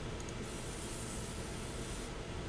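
Fiber laser marking a metal plate: a thin, high-pitched hiss from the beam working the surface, starting about half a second in and cutting off near the end.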